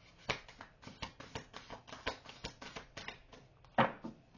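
A deck of oracle cards being shuffled by hand: a run of irregular light card clicks and flicks, with one sharper snap near the end.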